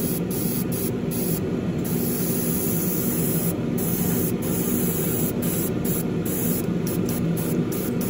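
Gravity-feed airbrush hissing as it sprays chrome paint, the highest part of the hiss briefly dropping out many times, over a steady low hum from the spray booth.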